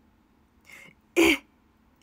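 A young woman's voice clearing her throat once, short and sharp, just after a faint breath.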